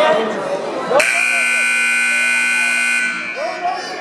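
Wrestling scoreboard buzzer sounding one loud, steady blast of about two seconds, starting and cutting off abruptly, marking the end of a period.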